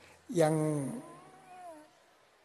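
A man's voice drawing out a single word, "yang", falling in pitch at its start and then trailing off faintly.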